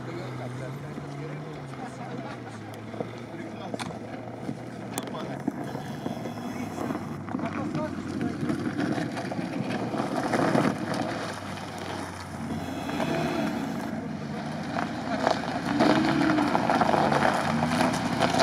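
Off-road SUV's engine running as it descends an icy hill and drives up close, getting louder toward the end.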